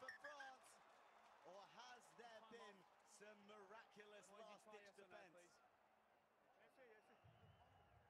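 Speech: a man talking, with no other clear sound.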